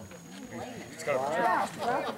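People talking in the background, louder in the second half.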